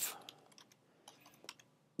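Faint, scattered keystrokes on a computer keyboard as a short terminal command is typed.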